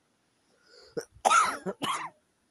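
A man coughing: a short in-breath, then a quick run of harsh coughs in the second second.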